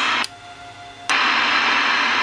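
Radio static hiss from a CB radio's speaker with the squelch broken open by the linear amplifier's receive preamp. About a quarter second in, the hiss cuts off with a click as the receive is switched off and the squelch closes, leaving only a faint steady tone. Just after a second in, the receive is switched back on and the hiss returns with a click.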